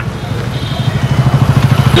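An engine idling close by with a fast, even throb, growing louder.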